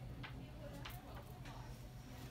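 Low steady hum with a few faint, sharp ticks.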